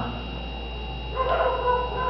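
A short, steady high-pitched whine, under a second long, starting a little past halfway, over a low electrical hum.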